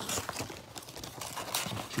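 Cardboard trading-card blaster box being opened by hand: flaps and paper rustling and scraping, with a few light knocks and clicks.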